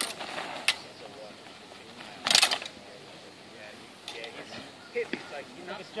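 Steel rapier blades clashing: a couple of sharp clicks at the start, then a loud, rapid rattle of several strikes a little over two seconds in. Voices follow near the end.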